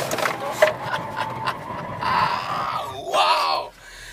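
Cabin of a Chevrolet Tornado pickup at the end of a 0–100 km/h acceleration run: the 1.8-litre engine's note falls away within the first second as the run finishes, leaving road noise, with a louder burst of noise from about two to three and a half seconds in before it goes quieter near the end.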